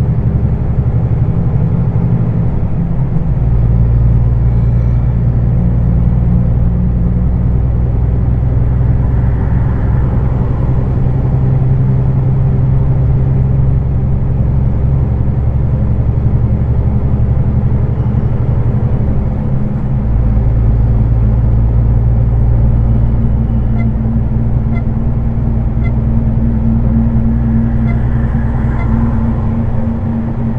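Heavy truck's diesel engine droning steadily inside the cab at road speed, its note shifting about three seconds in and again about twenty seconds in.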